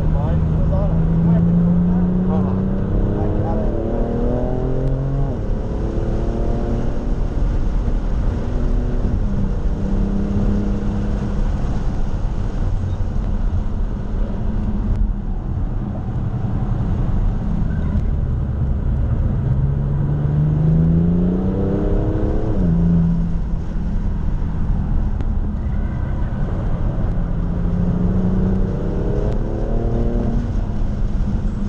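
BMW F80 M3's twin-turbo inline-six heard from inside the cabin under hard acceleration on track, its pitch climbing several times and dropping sharply at upshifts, over steady road and wind noise.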